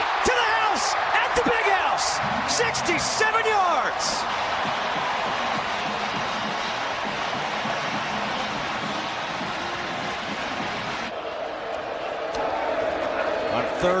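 Football stadium crowd cheering a touchdown run: a loud, steady roar with single shouts rising above it in the first few seconds. The roar drops away about eleven seconds in.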